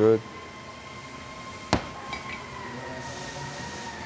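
A single sharp metallic click about two seconds in as steel hydraulic pump parts are handled on a workbench, over a faint steady shop hum with a thin high ringing tone.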